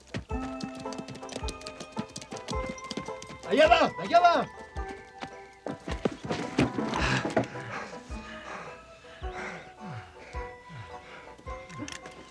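Film score music with held tones, and a horse whinnying loudly about four seconds in, its call rising and falling twice. Scattered short knocks run through it.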